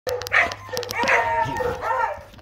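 A dog making several short, high-pitched vocal calls, with a few sharp clicks among them.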